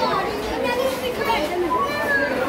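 Several young children's voices chattering and calling out over one another while they play.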